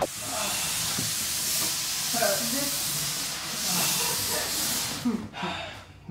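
A steady hiss for about five seconds, with faint voices under it, fading out near the end.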